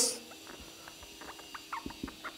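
Marker pen writing on a whiteboard: faint, short squeaks and taps of the tip, stroke by stroke.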